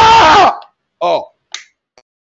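A man laughing hard: a loud, clipped burst of laughter, then a shorter one about a second in that falls in pitch.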